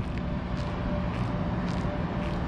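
Steady low rumble of road traffic and outdoor hum, with a faint steady tone coming and going.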